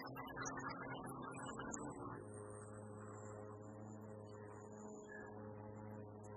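Low, sustained 'voo' tone voiced by several people, imitating a foghorn: the Somatic Experiencing voo-sound exercise for calming the nervous system. About two seconds in the held tone drops to a lower pitch and carries on steadily.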